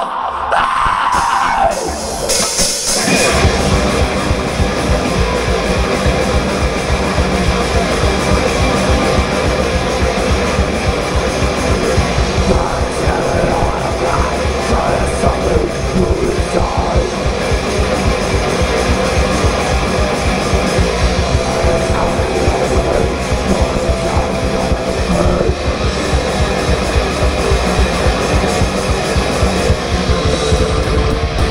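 Live thrash metal band playing loud: distorted electric guitars, bass guitar and fast drums. It opens on a held note, and the full band comes crashing in about three seconds in.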